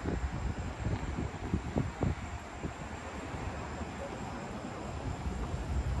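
Wind buffeting the microphone outdoors, a low, uneven rumble with a few faint knocks.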